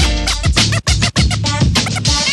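DJ scratching on a Denon SC5000M media player's platter over a hip hop beat, the sample cut in and out in quick, abrupt chops.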